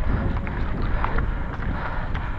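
Mountain bike riding fast on a dry dirt trail: steady wind rumble on the action camera's microphone, with tyre noise and short clicks and rattles from the bike over bumps.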